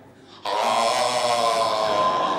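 A man's loud, drawn-out shocked "oh!" cry, starting about half a second in and held steadily to the end.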